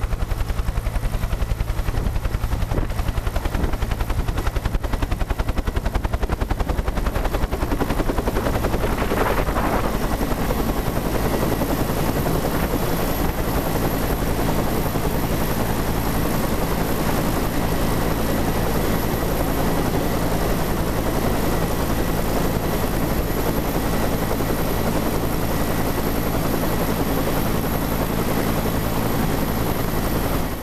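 Bell UH-1 Huey helicopter running on the ground, its turbine and two-bladed main rotor going steadily with a fast, even rotor chop.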